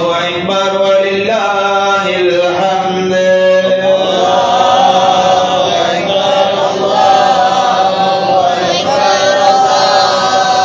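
Voices chanting an Islamic devotional melody, the phrases moving in pitch at first and then settling into long held notes about four seconds in.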